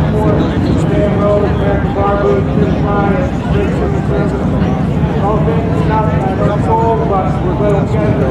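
Indistinct voices talking throughout, over a steady low rumble.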